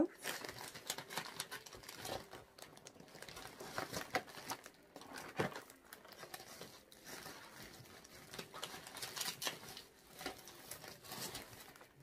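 Shopping bags and packaging crinkling and rustling as shop-bought items are rummaged out. The sound is an irregular run of soft crackles that goes on throughout.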